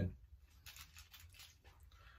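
Faint, scattered soft clicks and rustles of fingers picking at food on a plate.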